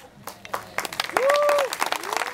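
Wedding guests applauding, the clapping starting about half a second in and quickly building. Midway through, one guest lets out a long held cheer over the applause.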